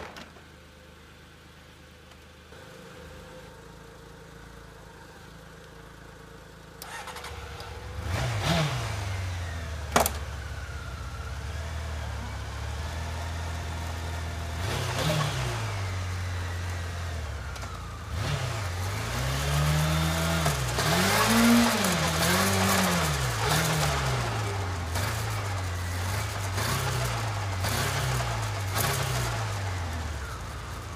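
Honda CBR600F's inline-four engine starting about eight seconds in after a quiet stretch, then running with the throttle blipped, its pitch rising and falling in a string of revs in the second half. A sharp click about ten seconds in.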